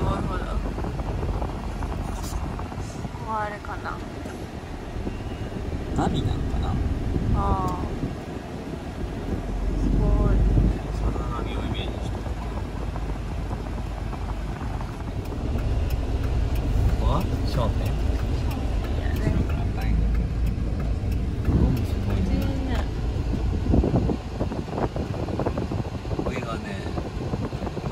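Mazda Bongo van's engine and road rumble heard from inside the cab as it drives slowly, swelling now and then, with brief low snatches of voices.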